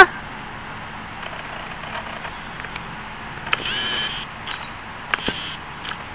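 Steady outdoor background noise with faint distant road traffic, broken by a short, high, pitched call about three and a half seconds in and a few light clicks.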